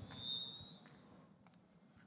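A brief high-pitched squeal of several thin tones at once from the PA system, lasting under a second: microphone feedback as the handheld mic comes up to the speaker. Low room noise follows.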